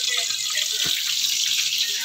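Split milkfish (bangus) frying in hot oil in a pan, a steady high hiss of sizzling.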